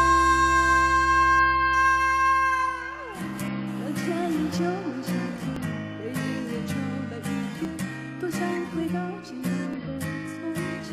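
Live pop band holding a long note that cuts off about three seconds in, followed by a strummed acoustic guitar playing a steady rhythm. A female singer comes back in with a new line near the end.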